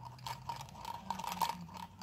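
Handling noise from a hand-held plastic and magnet device: a quick run of light clicks and scrapes as it is gripped and moved.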